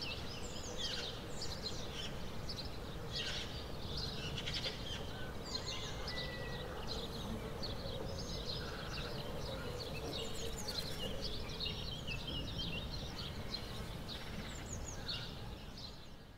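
Birds chirping and singing, many short quick calls overlapping, over a steady background noise.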